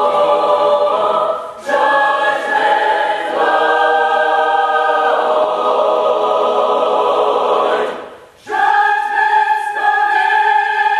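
Mixed chamber choir singing long held chords. There is a short break about a second and a half in, and a clear breath pause near the end before the choir comes in on a new chord.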